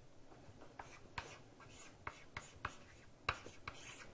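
Faint writing: a run of short taps and strokes of a pen or marker on a writing surface, the sharpest a little over three seconds in.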